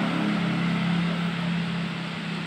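A steady low mechanical hum with an even wash of noise above it, from a running motor.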